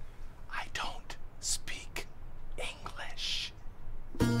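A man whispering: several short, breathy phrases with sharp hissing 's' sounds.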